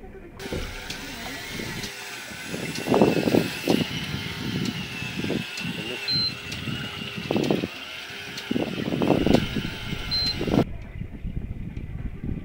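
Electric fishing reel winding in line: a steady high motor whine that wavers slightly in pitch, broken by a few louder low bursts.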